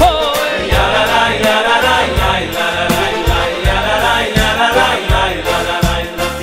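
Jewish Hasidic-style vocal music: a male lead singer and a male choir sing a wordless "ay ay ay" melody over an instrumental backing with a steady beat.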